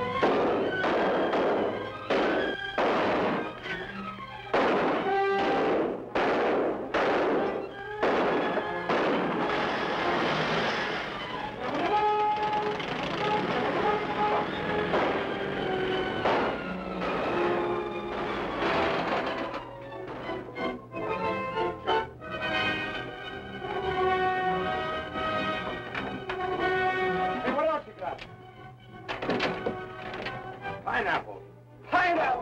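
Gunshots in a shootout, a shot roughly every half second to second with an echo after each, over orchestral film music. The shots thin out in the second half while the music carries on.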